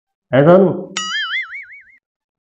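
Cartoon-style "boing" sound effect, a springy tone that starts suddenly about a second in, wobbling rapidly in pitch as it fades away.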